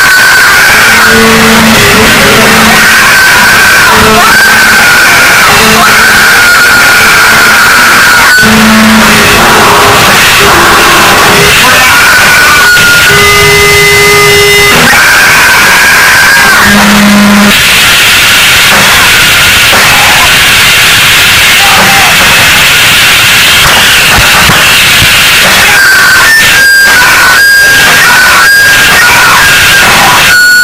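Loud, heavily distorted noise music: a dense, unbroken wall of distortion with short held tones appearing and dropping out, and a run of sharp hits near the end.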